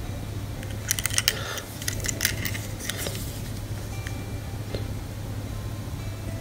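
Light clicks and taps of a plastic smart key fob and its metal key ring being handled and turned over in the hands, with a quick cluster of clicks about a second in, over a steady low hum.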